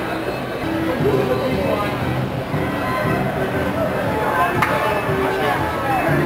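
Carousel music playing steadily, a tune of held notes that change every half second or so, with background voices underneath and one short knock about four and a half seconds in.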